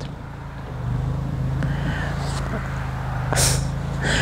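Steady low engine hum of a motor vehicle running, with a short hiss about three and a half seconds in.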